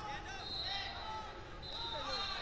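Voices of coaches and spectators overlapping and echoing in a large gym hall during a wrestling bout, with a couple of brief high-pitched tones.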